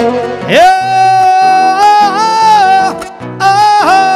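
A man singing a long, high held note with a wavering pitch, sliding up into it about half a second in and breaking off briefly before taking it up again: the drawn-out vocal line of a Panamanian décima. Acoustic guitars play underneath.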